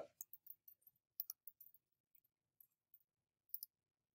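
Faint, scattered clicks of a computer mouse: about a dozen short clicks, most in the first two seconds and two more near the end, as selections are made in Photoshop.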